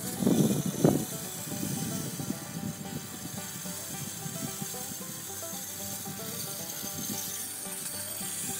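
Outdoor rainmaker, a tall stainless steel tube on a post, turned over so that its filling trickles down inside in a steady, even patter.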